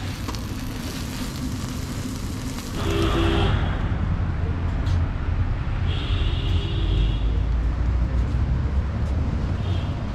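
Paratha sizzling on a large iron griddle for about the first three seconds, then street traffic: a heavy low rumble of passing vehicles with two brief beeping tones, one about three seconds in and another about six seconds in.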